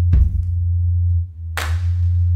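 Live jazz band playing: a held low bass note drones steadily under cymbal hits that ring out and fade, one light hit just after the start and a loud one near the end.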